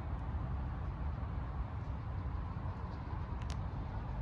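Steady low rumble of distant city traffic, with one brief faint tick about three and a half seconds in.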